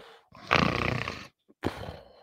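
A man laughing close to the microphone: a long breathy laugh about half a second in, then a shorter one near the end.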